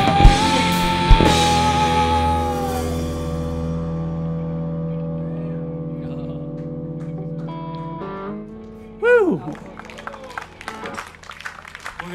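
Live rock band with electric guitars and drums ending a song: the last cymbal crashes and a held chord with a sung note ring out, then fade slowly over several seconds. Near the end comes a short sound sliding down in pitch, followed by a few scattered claps.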